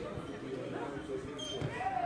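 Distant shouts and voices of youth footballers and spectators carrying across an outdoor pitch, with a few dull thuds among them.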